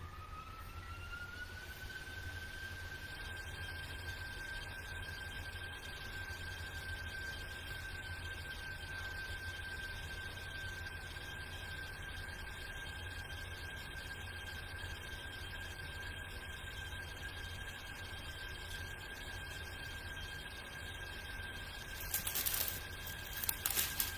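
A high whistling tone that rises in pitch over the first two seconds, then holds steady, with a low hum underneath. A few clicks come near the end.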